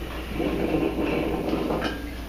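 A utensil handle jabbing and scraping inside a small plastic funnel, forcing stress-ball filling down into a balloon, with a gritty rattling that starts about half a second in and lasts over a second.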